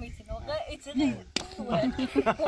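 A man and a boy talking and laughing during a hand-slapping game, with one sharp slap about one and a half seconds in.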